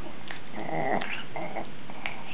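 Small dogs growling in play while they wrestle over a toy, in several short bursts with a thin whine between them.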